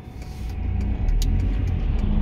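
Car engine and road rumble heard from inside the cabin, growing louder about a second in as the car pulls away.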